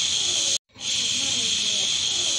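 A steady, loud hiss, cut off sharply about half a second in and starting again a moment later.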